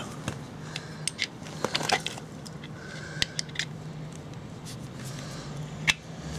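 Scattered small clicks, taps and scrapes of hands and tools working on a stopped small engine while it is readied for a compression test, over a steady low hum.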